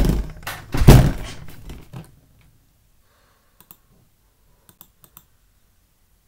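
Two heavy thumps about a second apart, each dying away over roughly a second, then a few faint clicks near the end.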